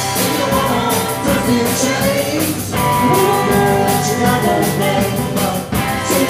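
Live indie rock band playing a song: electric guitars and a drum kit, with a woman singing lead.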